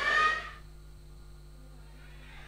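Voices in a large hall, loud for the first half second and then cut off abruptly, leaving only a faint steady low hum.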